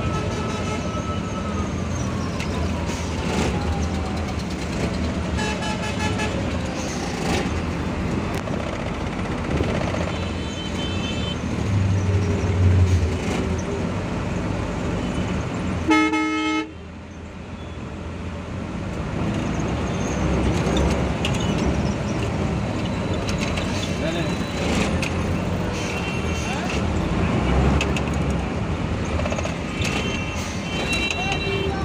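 Busy, crowded street traffic: engines running and vehicle horns honking again and again. A louder horn blast about halfway through cuts off sharply.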